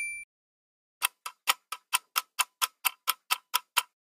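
Countdown clock-ticking sound effect: about a dozen even ticks, roughly four a second, starting about a second in. A bright ringing chime dies away at the very start.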